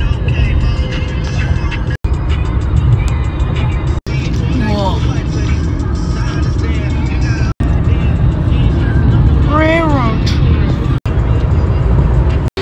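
Steady low rumble of car road noise heard from inside a moving car at highway speed, with music playing over it. The sound is chopped by several abrupt cuts between short clips, and a brief rising-and-falling pitched sound comes about five seconds in and again near ten seconds.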